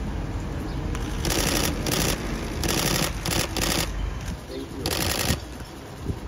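Still-camera shutters firing in rapid bursts, several runs of fast clicks each lasting about a quarter to half a second, over background talk and street noise.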